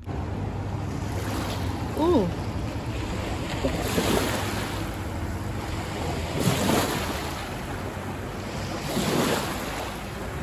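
Wind buffeting the microphone over the rush of river water at the shallow, stony bank, rising and falling in slow swells. A short falling call sounds about two seconds in.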